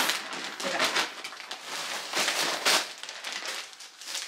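Plastic packaging crinkling and rustling as it is handled: a pair of pants in a clear plastic bag pulled out of a plastic mailer and held up. It is loudest at the start and dies down toward the end.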